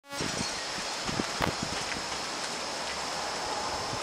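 Steady rain hiss, with a few sharp ticks in the first second and a half and a thin, high, steady tone over it.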